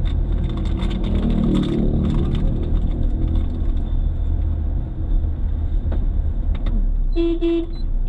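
Car cabin noise while driving: a steady low engine and tyre rumble heard from inside the car, with small clicks and rattles in the first few seconds. A short pitched tone sounds briefly near the end.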